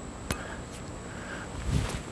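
A man's throwing wind-up as he hurls a heavy steel throwing spike: a single sharp click about a third of a second in, then a short low rush near the end as the throw is made, over a faint steady hiss.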